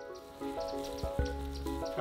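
Soft piano background music with held notes, over an outdoor field ambience that comes in as a steady hiss.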